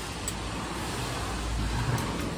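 A road vehicle passing close by, its engine rumble and tyre noise building to a peak near the end.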